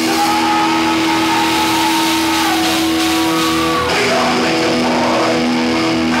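A death metal duo playing live: distorted electric guitar holding long sustained notes over drums. The held notes break off about four seconds in and the riff changes.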